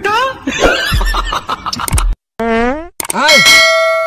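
A shouted word and speech over deep beat thumps, then, about three seconds in, a loud, bright bell-like ding that rings on and slowly fades.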